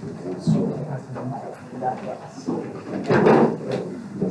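Indistinct talk of several people in a classroom, loudest about three seconds in, with a few knocks and clatter like drawers, desks or bags being handled.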